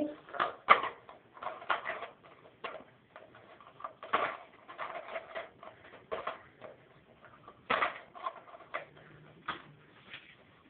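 Irregular clicks, scratches and crinkles of a small, tightly sealed gift box being picked and pried at by hand to get it open, with quiet gaps between the louder snaps.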